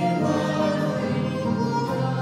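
Worship group of several voices singing a hymn together, with acoustic guitar accompaniment.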